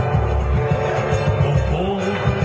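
Live band playing dance music, including acoustic guitar, with a strong low bass line carrying a steady rhythm.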